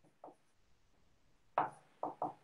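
Marker writing on a whiteboard: a few short taps and strokes, faint at first, with the loudest about one and a half seconds in.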